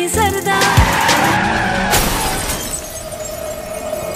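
Film soundtrack: the song's melody breaks off into a loud noisy burst like a crash effect that fades over a couple of seconds, with a second sharp hit about two seconds in. It settles into a steady held drone of tense background score.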